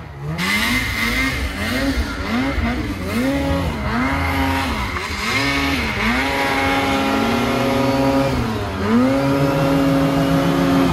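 Ski-Doo snowmobile's two-stroke engine revved up and down in about eight quick throttle blips, then held at higher revs in two longer pulls, as the rider rocks the stuck sled to dig it out of a hole in deep powder. The track churning snow adds a hiss over the engine.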